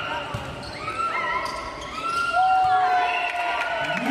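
A volleyball struck several times in a rally on an indoor court, each hit a sharp knock about a second apart, with players' voices calling out over it.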